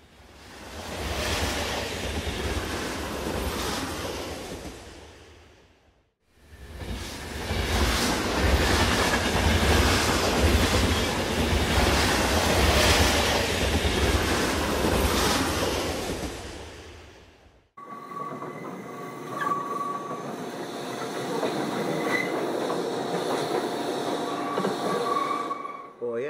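Train running on the rails, heard from inside the carriage: a steady rush of noise over a low rumble. The sound drops out briefly about six seconds in, then changes suddenly a few seconds later to a lighter running noise with faint thin wheel squeals.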